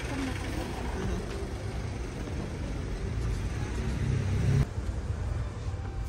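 City street traffic: cars running and passing at a busy intersection, a steady low rumble that grows louder about three and a half seconds in, then cuts off suddenly near the end.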